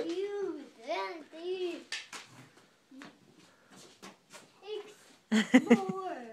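A person laughing in three short rising-and-falling bursts over the first two seconds. A quieter stretch follows, and near the end come a few sharp knocks together with a voice.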